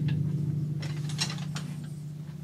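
Timpani ring dying away after the last stroke, with light clicking and rattling of mallets being handled, mostly about a second in.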